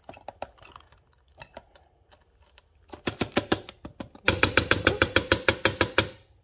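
A cat crunching dry kibble in its bowl, then a metal spoon tapping rapidly against the food bowl, about eight taps a second, as wet cat food is knocked off it into the bowl; the tapping starts about three seconds in and gets louder for the last two seconds.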